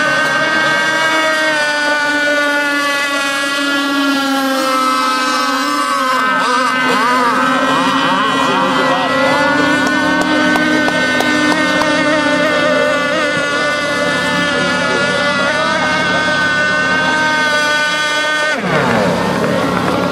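Radio-controlled racing boats' engines running flat out: a steady high-pitched whine made of several overlapping engine notes that weave up and down in pitch around the middle as boats pass one another. The sound changes abruptly near the end to a single closer engine.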